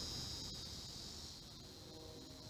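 Insects chirring in a steady, high-pitched drone that eases off slightly toward the end.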